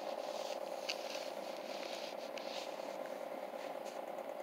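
Faint crackles and ticks of a plastic-and-cardstock air freshener package being handled, over a steady low background hum.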